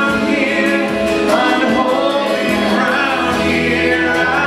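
Live worship music: a band with acoustic and electric guitars and several singers, voices holding long notes, with many voices blending like a choir.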